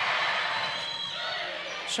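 Gymnasium crowd noise during a volleyball rally: many voices cheering and shouting together in a steady wash that eases slightly near the end.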